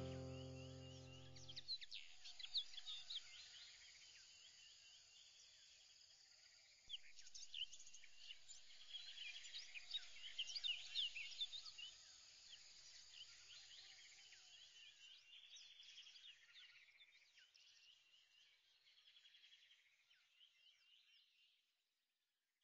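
A few seconds of music ending, then faint birdsong: many quick high chirps and twitters. It grows busier about seven seconds in and fades away near the end.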